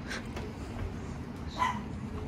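A dog barks once, briefly, about one and a half seconds in.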